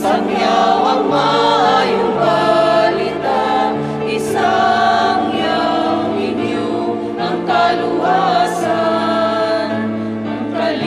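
Church choir singing a hymn over sustained organ accompaniment, the low notes held and changing in steps.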